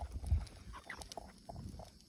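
A dog breathing hard with its mouth open while walking on a leash, with a low rumble on the microphone about a third of a second in.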